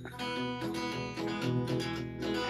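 Acoustic guitar strummed in a steady rhythm, its chords ringing on between the strokes.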